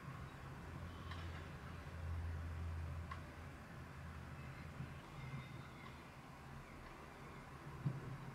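Quiet room tone: a faint low steady hum, slightly louder for a couple of seconds early on, with a few faint soft ticks.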